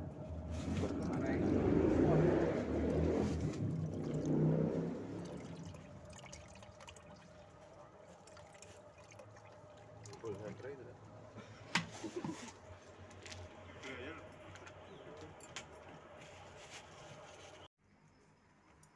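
Water from a garden hose pouring and splashing into a partly filled plastic bucket, loudest in the first few seconds and then quieter. The sound cuts off abruptly just before the end.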